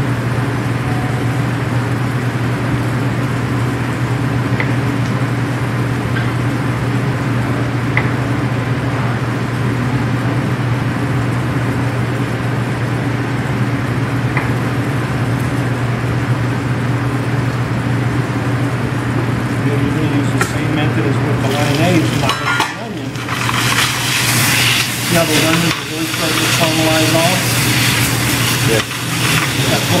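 Steady low hum with a few faint knife taps on a cutting board. About two-thirds of the way in, sliced potatoes and onions go into a hot frying pan and sizzle loudly to the end.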